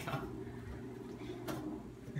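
Pie dish being handled on a metal oven rack: a sharp click about one and a half seconds in, with a few faint ticks, over a steady low hum.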